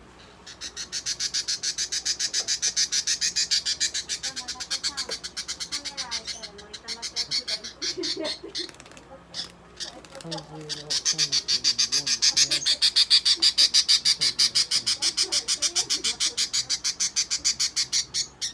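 Budgerigar squawking in a rapid, harsh string of calls, about five a second, as it is caught and held in the hand. The calls break off briefly near the middle, then come back louder.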